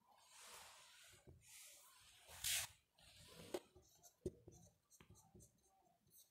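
Faint marker pen writing on a whiteboard: scratchy strokes, the loudest about two and a half seconds in, then a few sharp taps of the tip on the board.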